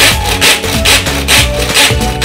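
Pull-string manual food chopper being worked through carrots: the cord rasps out and back again and again, about two pulls a second, spinning the blades in the bowl. Background music with a steady beat plays over it.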